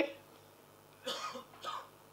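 Two short, soft coughs about half a second apart, starting about a second in, after a woman's speech breaks off.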